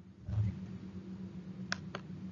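A steady low hum, with a short low thump about a third of a second in and two quick sharp clicks near the end.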